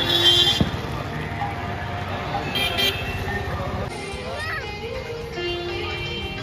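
Busy street ambience: passing vehicles, people talking and music playing, with short high horn beeps near the start and again a little before halfway.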